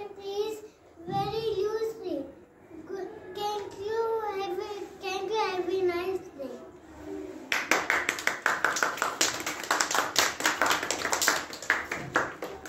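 A young child speaking in a high voice, then, about seven and a half seconds in, a group clapping hands.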